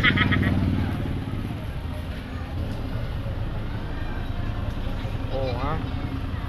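Steady low rumble of a motor vehicle running, with a short high-pitched voice at the start and another brief voice near the end.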